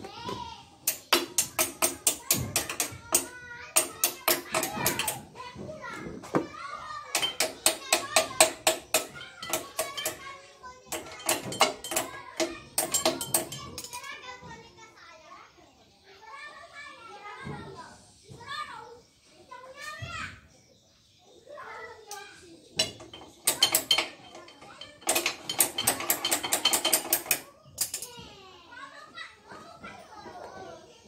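A hand ratchet wrench clicking in five bursts of rapid, even clicks, each lasting a couple of seconds, as it turns a fastener at the rear wheel hub. A child's voice is heard between and over the bursts.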